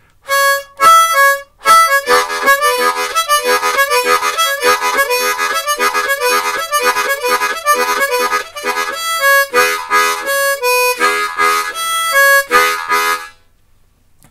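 Diatonic blues harmonica in the key of A played with cupped hands. Single blow notes are answered by rapid rhythmic 'chakka' chord strokes. The phrase repeats and stops shortly before the end.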